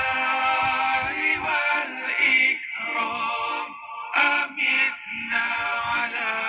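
Islamic zikir chanted to a melody: sung voices holding long phrases, with brief pauses between them.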